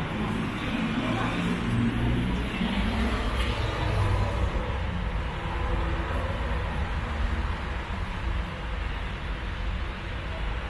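Steady low rumble of road traffic, with a vehicle engine loudest in the first few seconds and then fading.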